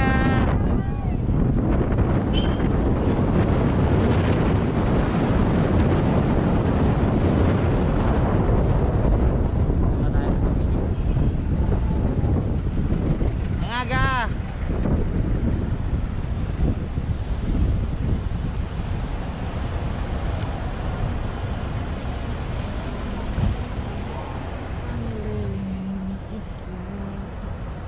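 Wind buffeting the microphone, a loud, steady low rumble. A short, high-pitched call with a bending pitch cuts through it right at the start, and again about halfway through.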